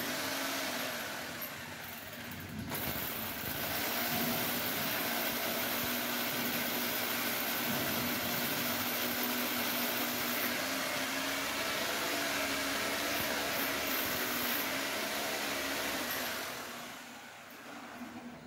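Corded electric drill boring holes into a plastered masonry wall for wall-plug screws. It runs steadily with a brief dip about two seconds in, then winds down near the end.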